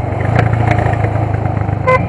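Motorcycle engine running steadily, with a brief beep near the end.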